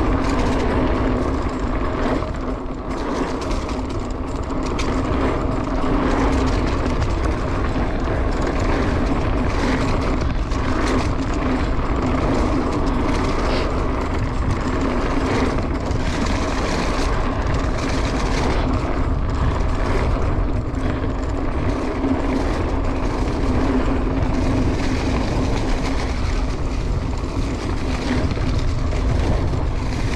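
Mountain bike riding down a leaf-covered dirt singletrack: a steady rush of wind on the camera microphone mixed with tyres rolling over dirt and dry leaves, with occasional knocks and rattles from bumps in the trail.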